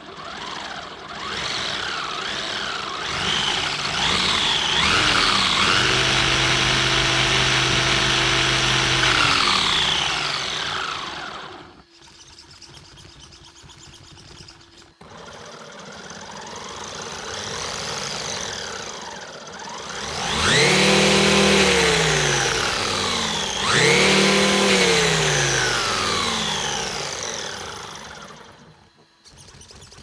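Brushless 2852 motor (2650 KV) and gear drivetrain of a RLAARLO AM-D12 1/12 RC desert truck, wheels spinning free in the air, whining up and down with the throttle. On the stock 2S battery it climbs, holds top speed for a few seconds, then winds down. After a short pause it runs on a 3S battery, revving up twice to a higher pitch before winding down.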